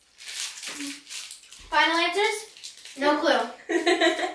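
Girls' voices: short stretches of indistinct talk or vocal sounds, about two seconds in and again near the end, after soft breathy noise at the start.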